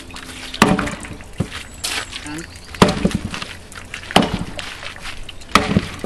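Leveraxe splitting axe striking a block of green elm four times, sharp chops one and a half to two seconds apart; at nearly each strike the blade splits the wood and comes loose rather than sticking.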